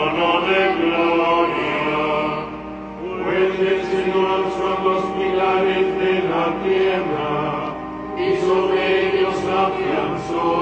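Sung liturgical chant: voices holding long notes in phrases a few seconds long, with brief pauses between phrases.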